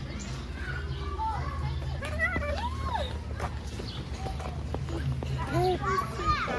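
Children's voices and chatter, with a steady low hum underneath.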